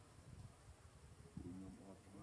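Faint buzzing of a flying insect, heard briefly in the second half.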